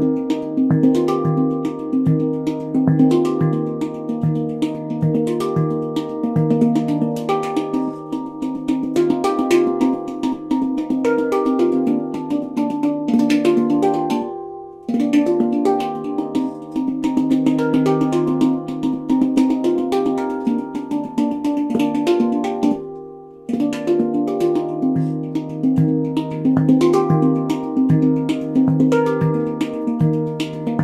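A Xenith handpan, a 20-inch steel handpan tuned to Eb Arrezo (Eb / Bb C D Eb F G Bb), played with the hands: quick rhythmic runs of ringing steel notes over a repeated low note. The playing breaks off and lets the notes ring away twice, about halfway and about three quarters in, before starting again.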